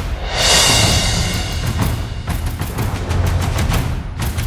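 Full layered epic percussion mix playing: low toms, taikos and Chinese drums underneath, with military and regular snares and shakers on top. It opens with a loud hit and a bright wash that fades over about two seconds, then fast snare and shaker strokes fill the rest.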